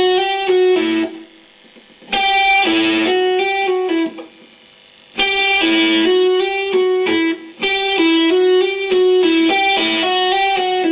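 Electric guitar playing a fast legato lick of hammer-ons and pull-offs on one string (frets 8-5-7-8-7-5) in sixteenth-note triplets, without hybrid picking. It comes in repeated runs, with short breaks about a second in and about four seconds in, then runs on without a break from about five seconds.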